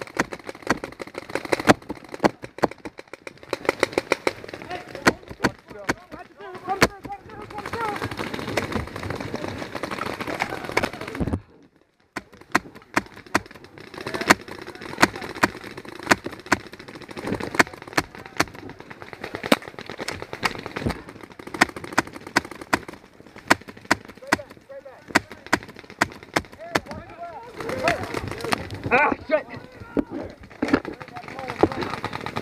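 Paintball markers firing during a game: many sharp pops, scattered and sometimes in quick strings. The sound cuts out briefly about a third of the way in.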